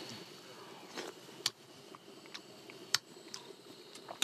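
Faint spoon-and-bowl sounds while stew is tasted from a wooden bowl: a few short, sharp clicks over a low steady hiss.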